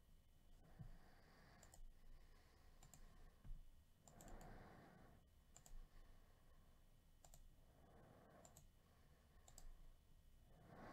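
Near silence with faint, scattered clicks of a computer mouse and keyboard as a list is copied and pasted into a spreadsheet.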